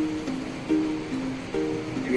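Background music of plucked string notes, a new note starting about every half second.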